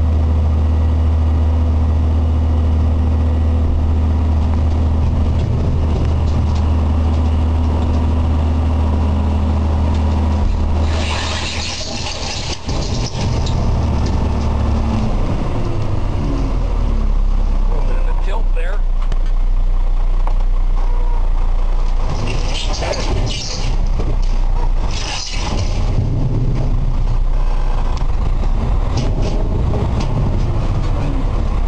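Truck's diesel engine running steadily with the power take-off engaged while the load is dumped. Its drone drops lower about halfway through, and bursts of hissing come about a third of the way in and again near the end.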